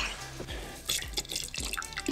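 Pink antifreeze being poured from a jug into a boat's live well plumbing fitting, trickling and dripping in small uneven splashes, to keep leftover water in the lines from freezing.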